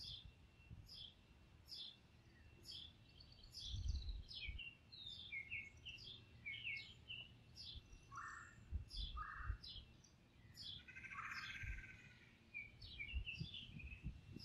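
Birds singing in light wind. One bird repeats a short falling chirp a little more than once a second, other birds add brief notes in between, and low wind gusts rumble now and then.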